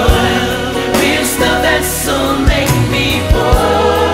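Gospel choir singing with a live band, drum kit hits and low bass notes underneath the voices.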